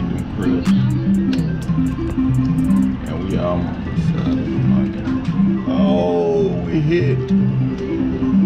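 Music with a plucked bass and guitar line, its low notes changing in a steady pattern, with a voice now and then in the mix. A run of quick clicks sounds during the first couple of seconds.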